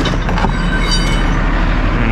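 Cummins ISX diesel in a Kenworth W900L idling steadily, with a brief high metallic squeal about half a second in as a steel winch bar scrapes out of the truck's side storage box.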